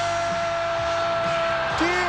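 A football commentator's long, drawn-out "goool" cry, held on one steady pitch for almost two seconds over a dense noisy background, then breaking into excited speech near the end.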